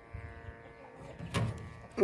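A faint, steady buzzing hum that fades out after about a second, then a single short knock.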